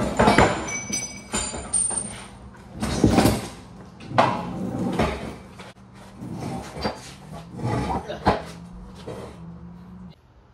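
Crown Victoria front K-member, still on its wheels and hung from a shop crane chain, being shoved and wrestled out from under a truck frame: a series of irregular metal clanks, knocks and scrapes, with a few short high squeaks near the start.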